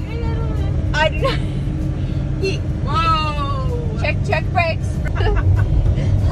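Steady low road and engine rumble inside a moving truck's cabin, with women's voices talking and one drawn-out, falling exclamation a few seconds in.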